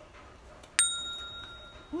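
A single bell-like ding, struck sharply about a second in and ringing on, fading over about a second.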